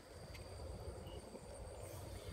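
Faint outdoor ambience of insects trilling steadily at a high pitch, over a low rumble, with one short high chirp about a second in.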